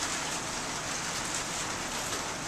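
Steady rain falling, heard as an even, continuous hiss.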